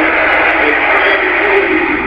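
Television broadcast audio heard through the TV set's speaker: a steady, loud wash of sound with no words.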